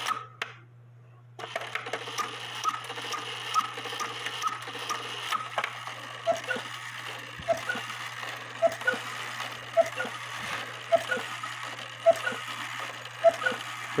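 Hubert Herr cuckoo-quail clock's count-wheel movement running after being tripped: gears, levers and wires clicking in a regular rhythm, about two to three clicks a second, after a brief silent gap near the start.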